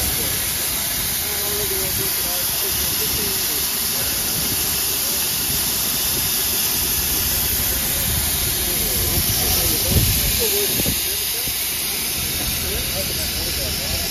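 Standing steam locomotives NSWGR 3526 and 3265 hissing steam steadily at rest. A single low thump sounds about ten seconds in.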